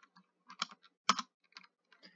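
Computer keyboard keystrokes: a few separate clicks as a line of code is finished and Enter is pressed, the loudest click about a second in.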